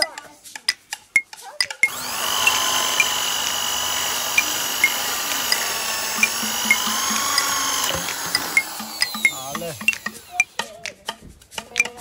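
Corded electric drill boring a hole into a green bamboo stalk. It starts about two seconds in, runs at a steady whine for about six seconds, then stops and spins down with falling pitch. Short, regular ticks come about twice a second throughout.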